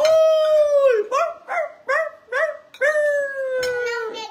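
A dog-like howl: one long held note that sags at its end, then four short falling yelps in quick succession, then another long, slowly falling note.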